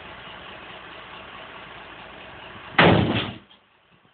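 A refuse truck's engine running steadily. About three seconds in there is one short, loud bang, and then the running noise stops abruptly.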